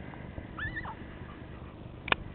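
A dog gives one short high-pitched yelp about half a second in, its pitch rising, holding, then falling.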